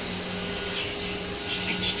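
Roborock S5 Max robot vacuum running just after starting its cleaning run, a steady motor hum.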